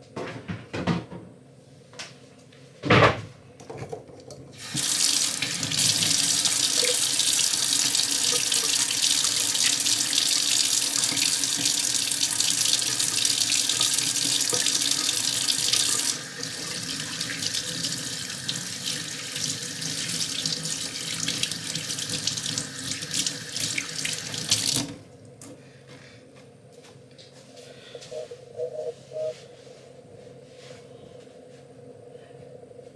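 Kitchen tap running into a stainless steel sink while hands are washed under it: the water comes on about five seconds in, gets quieter about sixteen seconds in, and is shut off suddenly about twenty-five seconds in. A single sharp knock comes shortly before the water starts.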